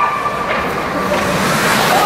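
Steady, noisy ice-rink ambience during play, with faint voices in the background.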